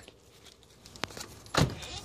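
A sharp click about a second in, then a louder dull thump about half a second later.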